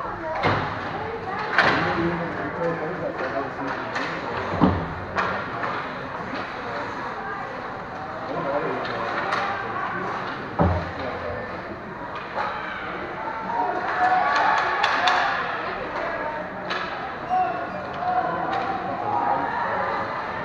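Ice hockey play in an arena: sticks and puck knocking against the boards, with a sharp knock about ten seconds in. Spectators' voices and shouts run under it, louder around the fourteen-second mark.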